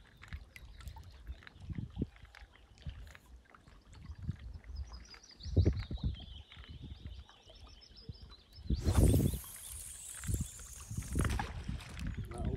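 A pike rod being cast out with a sardine dead-bait: scattered handling knocks, a falling whine about halfway through as the cast goes out, then a loud rushing noise for a couple of seconds near the end.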